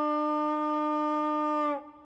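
A single long horn blast, one held note that dips slightly in pitch and cuts off near the end.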